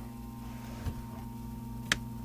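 A switch on a boat's electrical distribution panel clicks sharply near the end, with a fainter knock about a second in, over a steady low hum.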